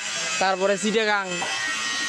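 A man speaking in a short phrase, then pausing, over a steady background hiss with a faint buzz.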